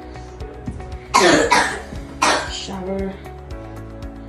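A person coughing three times in quick succession, starting about a second in, over steady background music.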